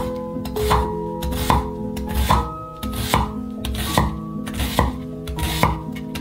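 Chef's knife cutting through an onion and striking a wooden cutting board, a series of short chopping strokes, over background music.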